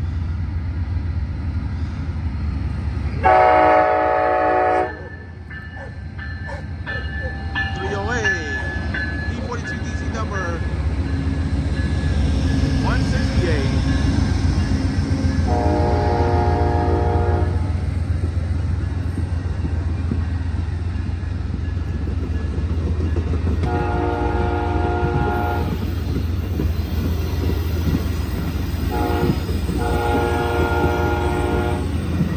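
Amtrak Coast Starlight passenger train passing close by, led by a Siemens ALC42 Charger and a P42 diesel locomotive: a steady low rumble of engines and wheels, with the lead locomotive's air horn sounding four times. The first blast, about three seconds in, is the loudest, and the last begins near the end.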